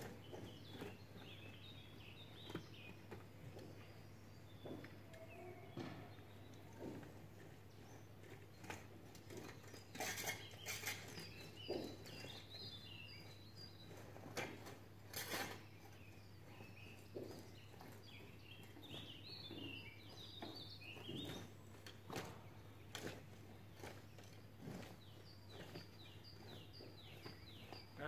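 Long-handled garden hoe scraping and chopping through soil and weeds in faint, irregular strokes. Small birds chirp now and then, over a steady low hum.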